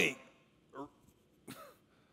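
A man's speaking voice trailing off at the end of a phrase, then a pause broken by two short, quiet vocal sounds about a second apart, the second opening with a sharp click.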